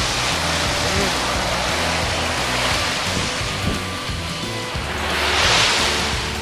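Small waves breaking and washing up over a sandy beach, with one wave rushing in loudest about five seconds in. A song plays underneath.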